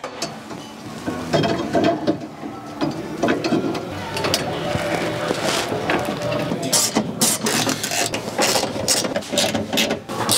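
Hand ratchet wrench clicking in quick runs as bolts on a cargo shelf's support bracket are tightened. The clicking is busiest in the second half.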